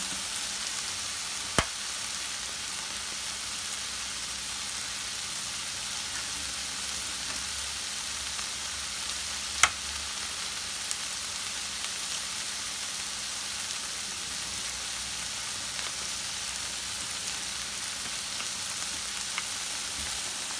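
Ground turkey with diced green pepper and onion sizzling in a large frying pan, a steady high hiss of browned meat frying. Two sharp clicks come through it, one near the start and one about halfway.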